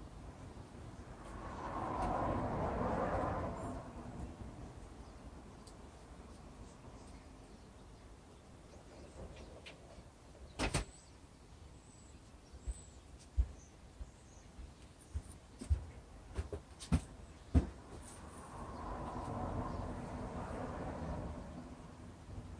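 Light knocks and clicks of plastic paint cups and wooden stir sticks handled on a work table, about eight sharp taps spread through the middle as cups are put down and picked up. Two soft swells of rushing noise, each a couple of seconds long, come near the start and near the end.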